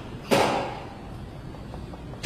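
A single sharp whoosh about a third of a second in, the storyteller's mouth-made sound effect for a halberd thrust, fading out in the hall's echo.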